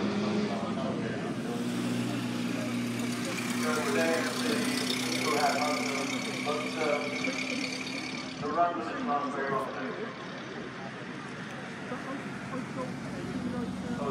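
Classic car engine running steadily as the car climbs the hill-climb course, a low even drone that fades out about eight seconds in.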